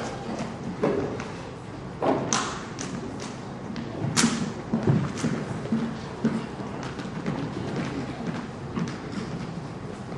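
Irregular thumps and sharp clicks, a few loud ones about two and four seconds in, from a band's drums and gear being handled and readied on a stage.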